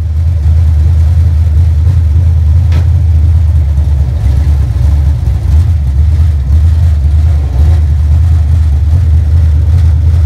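Chevrolet 604 crate small-block V8 in a dirt late model running steadily with an even, deep rumble, heard from inside the cockpit.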